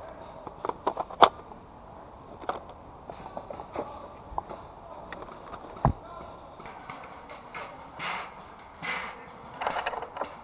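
Scattered clicks and knocks of airsoft rifle magazines and gear being handled, with a sharp click about a second in and a dull thump near six seconds. From about seven seconds on there is rustling as the player moves through leaves and undergrowth.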